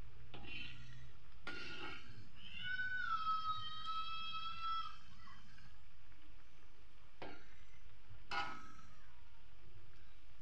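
Cassava combro balls frying in oil in a wok, with a few short knocks as the metal ladle turns them. About two seconds in comes one long, held animal call with several overtones, lasting about two and a half seconds.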